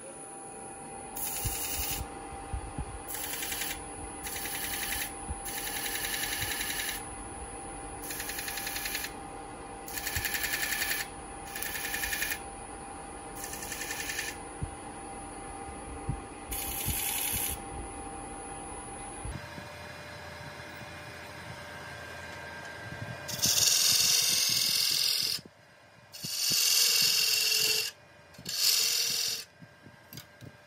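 Wood lathe running steadily with an ash table-leg blank spinning, broken by repeated short scratching hisses as a pencil is touched to the turning wood to mark its high and low spots. In the last few seconds three louder, longer scraping bursts come against the spinning blank.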